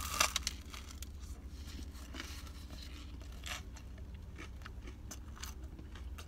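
A bite torn from a slice of pizza right at the start, then chewing with faint crunches and crackles of the crust, over a steady low hum.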